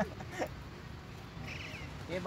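A kitten mewing once, a short high-pitched call about one and a half seconds in.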